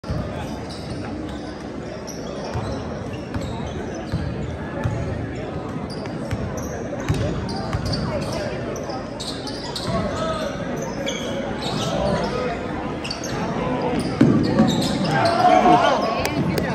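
Basketball game in a large, echoing gym: a ball dribbled and bouncing on the hardwood court, short sneaker squeaks, and spectators talking in the stands, their voices louder near the end.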